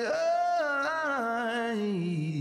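Recorded song with a single sung voice holding one long note that slides steadily down in pitch.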